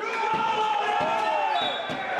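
Basketball dribbled on a hardwood court with short sneaker squeals, over the chatter and shouting of an arena crowd, with a couple of sharp bounces.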